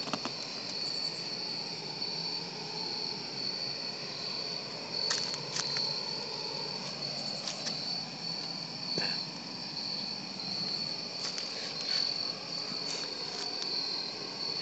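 Field crickets chirping in a steady, high-pitched, continuous trill, with a few faint clicks over it.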